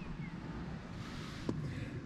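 Low, uneven rumble of wind buffeting the microphone, with a single faint click about one and a half seconds in.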